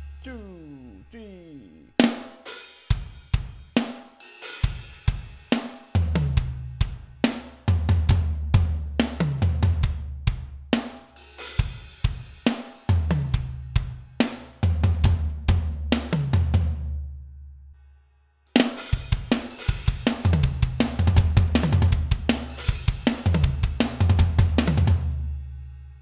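Roland electronic drum kit playing a pop-punk groove: bass drum and snare under ride cymbal with open hi-hat accents. The playing starts about two seconds in, breaks off for about half a second two-thirds of the way through, then starts again.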